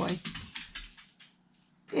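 A dog's toenails clicking on a hard floor as it paces and prances, a run of quick light taps in the first second that fades away.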